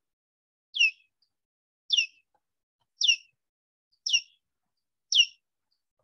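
Recorded echolocation calls of a big brown bat played over a computer speaker: five brief downward-sweeping chirps, about one a second.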